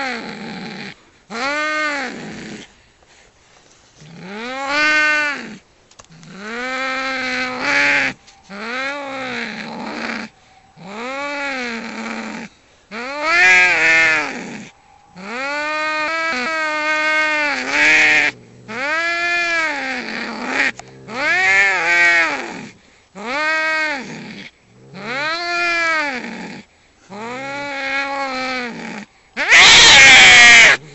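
Two domestic cats fighting, yowling in a caterwaul: a long run of drawn-out, wavering yowls that rise and fall in pitch, about one every two seconds with short gaps between. Right at the end it breaks into a louder, harsher screech as the cats scuffle.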